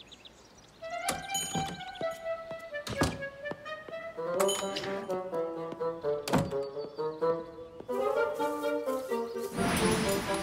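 Near silence for a moment, then light background music from an animated children's show, broken by several sharp thunks; the loudest comes about six seconds in.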